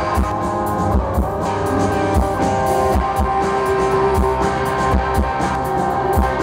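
Rock band playing live: electric guitar over a drum kit, with a regular kick-drum beat.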